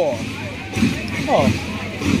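Drums of a marching drum corps beating, under the voices of a crowd of spectators.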